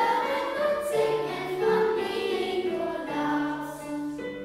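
Children's choir singing a German Advent song about St Nicholas, in sustained sung notes.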